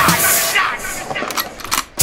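Hip hop backing music with rapped vocals that thins out about half a second in, leaving a few sharp clicks, and drops almost away just before the track comes back in full at the end.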